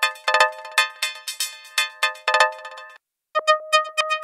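Emulated Access Virus C synthesizer playing a bright, bell-like chord preset ('CORD 1 RP') in short repeated stabs, two or three a second, each ringing out briefly. It cuts off about three seconds in, and a new preset starts a moment later.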